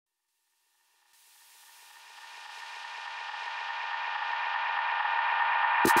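A held electronic chord fading in from silence about a second and a half in and growing steadily louder.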